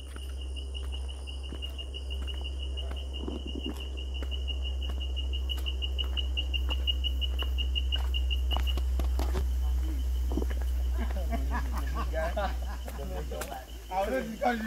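A forest insect trilling on one steady high pitch in rapid pulses, cutting off about nine seconds in, over a steady low rumble on the microphone. Faint voices come in near the end.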